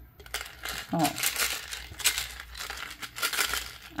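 Small pebbles going into a clear plastic soda bottle, a dense run of small clicks and rattles as they hit and roll against the thin plastic, which crinkles in the hand.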